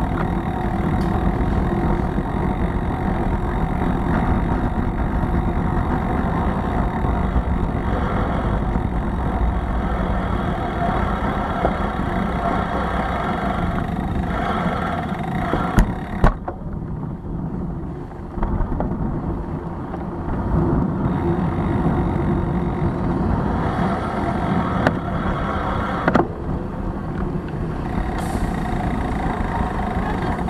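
Wind and road rumble picked up by a bicycle-mounted camera while riding, with city traffic noise behind. Sharp knocks come about halfway through and again later.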